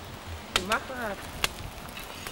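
Two sharp clicks or knocks, about a second apart, with a brief voice sound just after the first.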